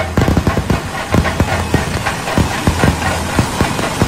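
Fireworks going off in a rapid, irregular barrage of sharp bangs and crackles, several a second.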